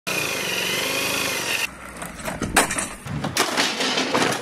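An electric drill running steadily on a socket on the variator nut of a scooter's open belt drive, with a thin whine that rises slightly just before it stops about one and a half seconds in. Then come a few sharp knocks and thuds, the loudest about two and a half seconds in.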